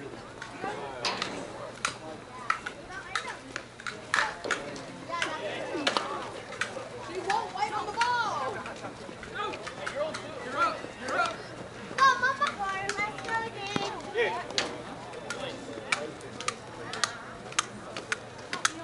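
Indistinct voices of softball players and spectators calling out and chattering across the field, with scattered sharp clicks and knocks throughout.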